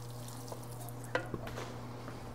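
Wooden spoon stirring orzo in a skillet, with a few short scrapes and taps against the pan about half a second in and again just after a second. A steady low hum runs underneath.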